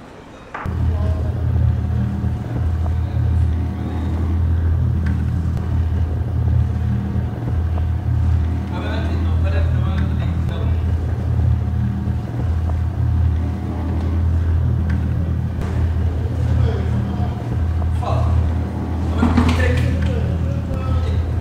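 Boat engine running with a steady low drone, coming in suddenly about half a second in and holding steady.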